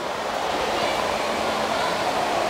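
Steady rushing background noise of an indoor water park, with faint distant voices mixed in.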